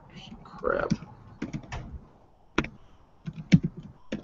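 Typing on a computer keyboard: irregular, scattered key clicks while code is being entered, with a short murmured voice about a second in.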